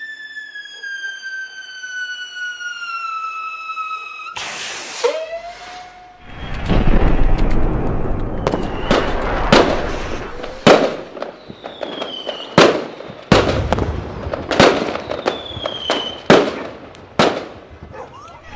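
Fireworks: a long falling whistle, then a burst and a run of sharp bangs about a second apart over steady crackling, with short falling whistles between the bangs.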